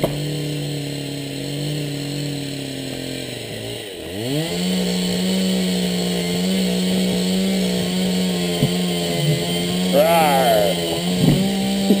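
Husqvarna 365 SE (65 cc) two-stroke chainsaw engine driving a Lewis chainsaw winch that is pulling boulders, running steadily under load. About four seconds in the engine speed drops away, then climbs back to a higher, steady pitch, which steps up slightly again near the end.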